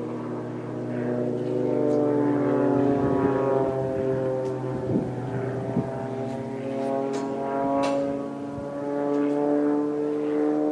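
Propeller engine of an aerobatic plane flying loops overhead, its pitch sliding up and down and its sound swelling and fading as it turns. A few sharp clicks come in the middle.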